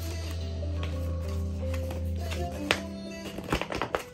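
Background music with steady held notes and a low bass tone. Over it come a few sharp clicks and crinkles, most of them near the end, from a paper manual and a plastic wrapper being handled.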